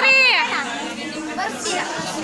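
Girls' voices chattering over one another, with one loud, high voice at the start.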